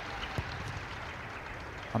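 Steady hiss of stadium ambience with one brief thud about half a second in: a rugby ball struck off the kicking tee's ground by the boot in a place-kicked conversion.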